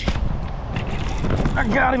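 Wind buffeting the microphone as a steady low rumble, with a sharp click right at the start. A man's voice speaks briefly near the end.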